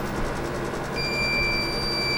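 A steady, high-pitched tone like a buzzer or alarm starts about a second in and holds, over a low background hum.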